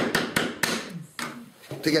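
Rapid mallet blows on the wooden edge of an old frame, about six or seven a second, working out old nails. The blows stop within the first second.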